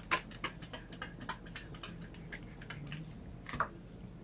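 Faint, irregular clicking and tapping, several light clicks a second, with one louder click about three and a half seconds in.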